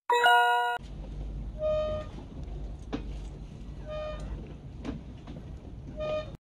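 A short electronic jingle of a few bright chiming notes, lasting under a second, over a channel title card. A low steady outdoor rumble follows, with two short pitched beeps about two seconds apart.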